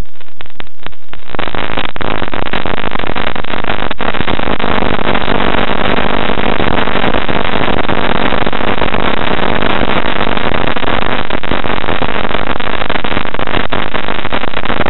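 Challenger II ultralight in flight: a very loud, steady engine drone mixed with rushing wind noise in the open cockpit. The sound comes in broken into crackling clicks for the first second or so, then runs continuous.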